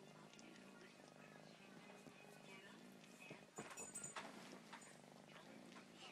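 A cat purring quietly and steadily, with a few soft clicks or rustles a little past the middle.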